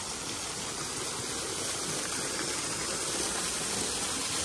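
Waterfall pouring off a rock overhang and splashing into a pond: a steady rushing of water that grows a little louder as it is approached.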